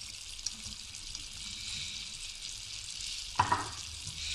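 Chicken pieces sizzling in an uncovered frying pan over a gas flame, a steady high hiss. The cooking liquid has all dried off, so the meat is frying in the pan.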